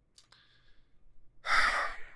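A man's sigh: one short, noisy breath out into a close microphone about one and a half seconds in, after a faint click near the start.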